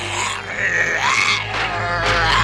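Groaning of zombie-like energy-vampire robots in an animated cartoon's sound effects.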